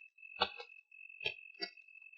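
Four sharp ticks or knocks over a steady high-pitched tone, in a film soundtrack. The ticks come in two uneven pairs.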